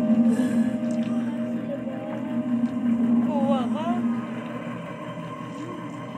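Horror film soundtrack playing from a TV: a low sustained drone with wavering, sliding tones about three and a half seconds in, easing down in level after that.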